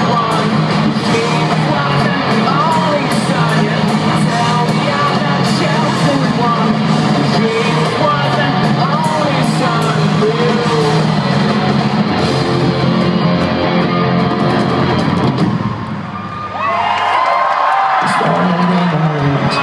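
Live rock band playing loudly with electric guitars and drums, heard from within the crowd. The music drops in level briefly about sixteen seconds in, then comes back.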